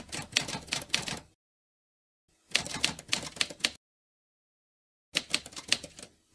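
Typing sound effect: rapid key clicks in three bursts of about a second each, with complete silence between them.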